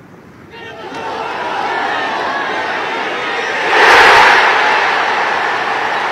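Golf gallery around a green erupting in cheers as a putt is holed. The roar builds from about half a second in, peaks around four seconds and stays loud.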